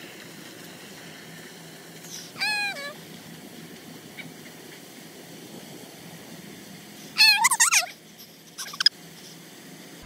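High, wavering cries over a steady background hiss: one short cry about two and a half seconds in, then a louder run of them about seven seconds in.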